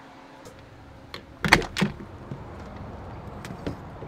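An RV's entry door being unlatched and opened: a light click, then two sharp knocks of the latch and door about a second and a half in.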